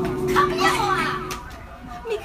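Excited high-pitched voices over the tail of a held musical chord, which stops about one and a half seconds in.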